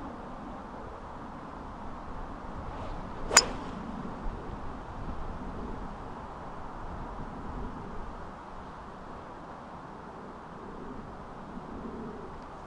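A golf club striking the ball on a full swing: one sharp crack about three seconds in, over a steady hiss of outdoor air.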